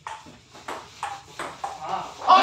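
Table tennis rally: the celluloid ball clicks off the paddles and the table in a quick series of sharp ticks, about six in two seconds.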